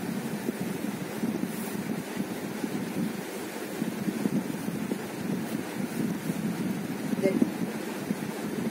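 Silk sari fabric rustling and swishing steadily as it is unfolded, lifted and draped by hand.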